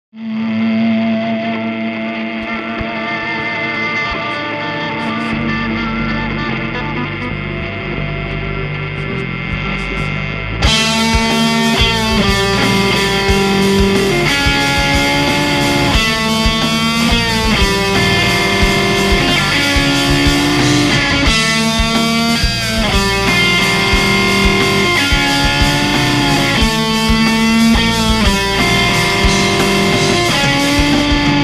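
Fender Stratocaster electric guitar played over a rock backing track. The music is quieter for about the first ten seconds, then jumps louder as the full band and guitar come in.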